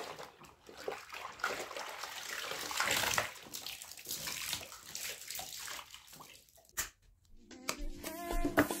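Soapy water sloshing and splashing in a plastic washbasin in irregular bursts, as clothes are scrubbed by hand and trodden underfoot.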